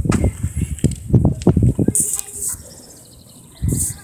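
Low, indistinct talking outdoors, with two short hissing scuffs, one about halfway through and one near the end.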